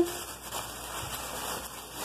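Plastic grocery bags rustling and crinkling as hands move items around inside them, an uneven, soft noise.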